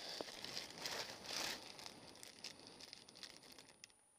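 Clear plastic bag crinkling as it is handled, in irregular bursts with the loudest crinkle about a second and a half in, fading toward the end.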